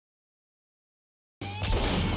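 Dead digital silence at an edit cut. About a second and a half in, a dense mix of sound cuts in abruptly.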